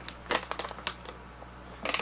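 A few short crinkles and clicks from a plastic dog-treat bag being handled and opened.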